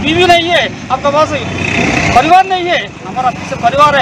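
A man speaking continuously in a raised voice.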